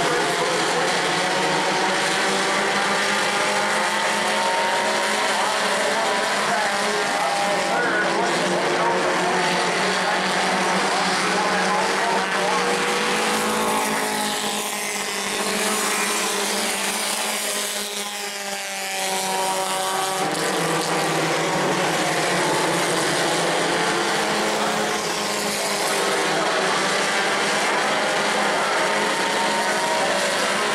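Engines of several Bomber-class stock cars racing together on an oval track, their pitch rising and falling as the drivers get on and off the throttle. About halfway through the sound briefly drops and the pitches glide as the pack sweeps past and away.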